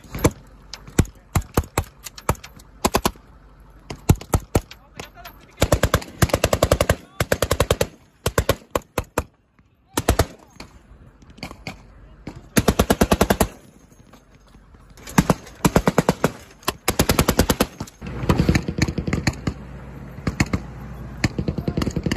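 Gunfire from carbines and a Humvee's turret-mounted machine gun. Spaced single shots come first, then several rapid bursts of about a second each, and a longer, denser run of fire near the end.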